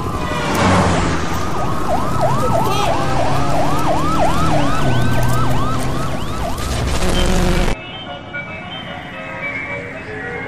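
Police siren yelping in fast rising-and-falling sweeps, about three a second, over loud vehicle and road noise. It cuts off suddenly near the end, leaving quieter music.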